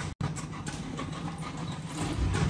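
Factory workshop background noise: a steady low hum with a few faint clicks and handling sounds, briefly cutting out just after the start.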